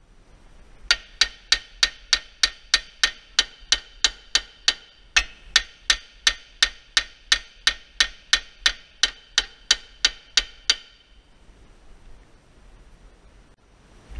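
A hammer strikes the steel front hub assembly of a Ford Fiesta ST150 again and again, about three ringing metallic blows a second, to knock the hub free from the lower suspension arm once its bolt is undone. The blows stop near the end, once it comes loose.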